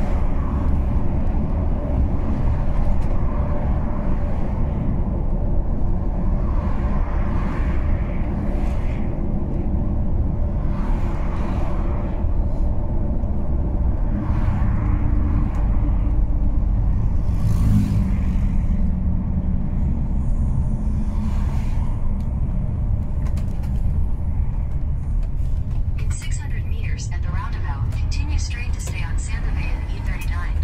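Steady low engine and road rumble inside a truck cab while driving, with a voice talking over it at intervals.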